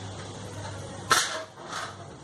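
Hot oil sizzling faintly around a test drop of besan batter, showing the oil is hot enough for frying boondi. Two short noisy bursts come a little after a second in, the first the louder.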